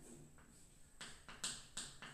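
Chalk writing on a chalkboard: short taps and scrapes of the chalk stick as letters are formed. One faint stroke comes about half a second in, and three louder ones come in the second half.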